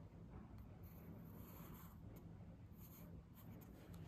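Faint scratching of a coloured pencil on paper, coming in several short strokes as letters are written.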